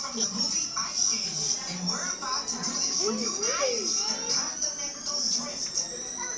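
Indistinct chatter of children's and adults' voices, with music playing underneath, over a steady high hiss.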